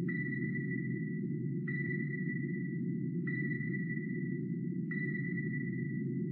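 Submarine sonar pings: a high tone that starts sharply and repeats about every second and a half, over a steady low underwater rumble.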